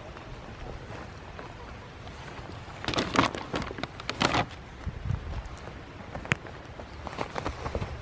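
Crinkling of a brown paper bag as a small child rummages in it for a seed potato, in two short bursts about three and four seconds in, over a low outdoor background.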